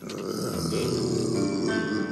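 Music at an edit: a dense, unclear wash of sound, then piano notes come in near the end.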